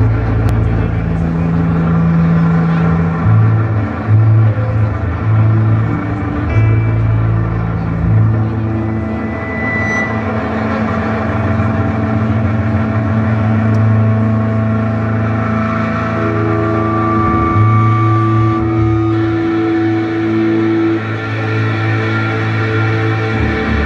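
Live rock band's instrumental intro: electric guitars and bass holding long, droning notes that change pitch every few seconds, loud through the stage PA.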